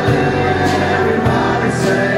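Live country band playing at full volume, with acoustic guitar, electric bass and drums under several voices singing, with regular drum hits.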